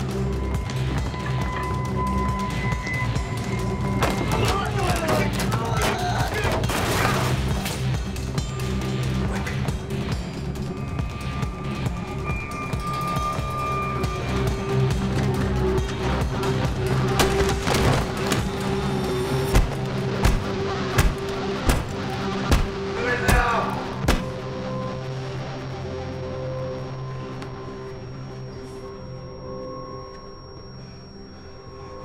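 Tense film score of sustained low droning tones, with a run of about six sharp, loud hits in quick succession past the middle, after which it fades.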